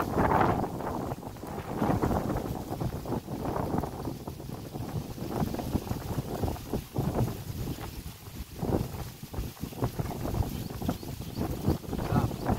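Wind buffeting the microphone: an uneven, gusting low rumble.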